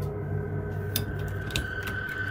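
A steady hum with a thin high tone held under it, and a few light clicks in the second half.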